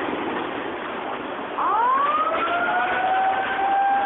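A wailing siren: its pitch falls away at the start, then rises again about one and a half seconds in and holds a steady high note. Under it runs the noisy rush of floodwater from the 2011 Japan tsunami.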